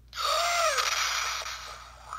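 A person's loud, harsh scream, its pitch arching and then dropping a little under a second in before it trails off into a breathy rasp, played through a handheld console's small speaker.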